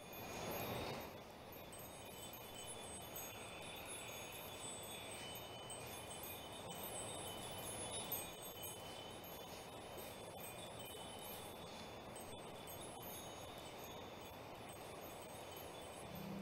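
Faint wind chimes ringing over a steady soft hiss, fading in at the start.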